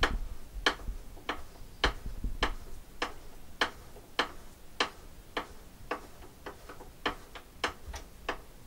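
Steady, even ticking: sharp light clicks a little under two a second.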